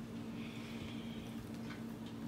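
Quiet room tone with a steady low hum, and a faint soft hiss for about a second near the start.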